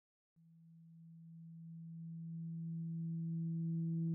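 A low, steady electronic tone fades in about half a second in and swells gradually louder, gaining higher overtones as it grows: the sound of a TV station's logo end card.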